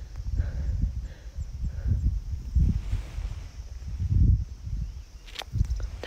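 Strong wind buffeting the phone's microphone in uneven gusts, a low rumble that swells and drops, with a single sharp click near the end.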